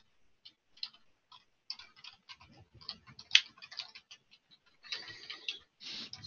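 Computer keyboard typing: light, irregular keystroke clicks, with one sharper click a little past three seconds in and a quicker run near the end.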